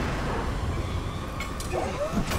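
Tornado wind in film sound design: a dense, steady rush of noise over a heavy low rumble, with a sharp hit about one and a half seconds in.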